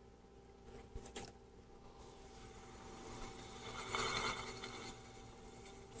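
Electric potter's wheel running with a faint steady hum, under the soft wet rubbing of hands pulling up the wall of a spinning clay cylinder; the rubbing grows louder in the middle of the stretch, about three to five seconds in.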